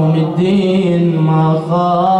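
A man's voice chanting an Arabic religious recitation in a slow, melismatic style, drawing out one long note with small turns in pitch.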